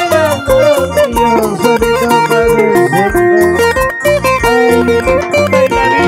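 Loud Andean dance music: an instrumental passage between sung verses, a plucked-string melody running over a steady, pulsing bass beat.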